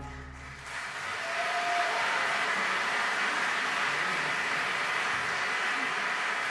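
The last low orchestral note fades out, then audience applause starts about a second in and holds steady in a large hall.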